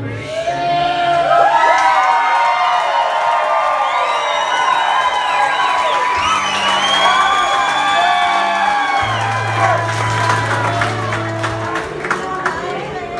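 Live band music with strummed acoustic guitar and sustained low notes, while the audience cheers and whoops over it.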